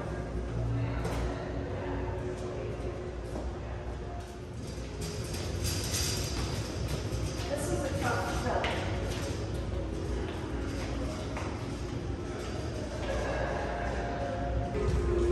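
Heavy road cases on casters being pushed and pulled across a concrete floor, the wheels rumbling and clattering, with scattered knocks.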